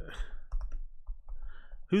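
Computer keyboard typing: a few separate key clicks as a search is typed.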